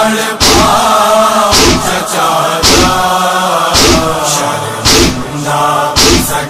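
Male voices chanting a Muharram nauha lament in long held notes. Loud rhythmic chest-beating (matam) strokes sound about once a second, keeping the beat of the lament.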